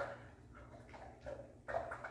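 Faint mouth sounds from a dog working at a raw marrow bone: soft short chewing and gulping noises, a few of them in the second half, as he tries to get the marrow down.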